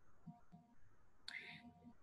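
Near silence, broken by one short breath intake from a woman about a second and a half in.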